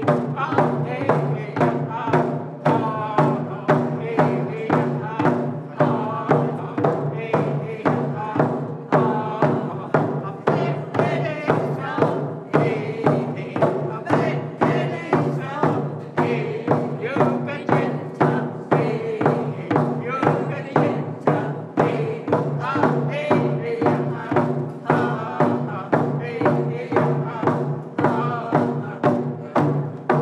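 Group of Tahltan singers singing in unison to hand-held frame drums beaten in a steady beat, about two strokes a second.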